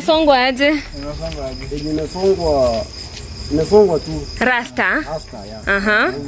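A steady high trill of crickets running on under men's voices talking and laughing in short bursts.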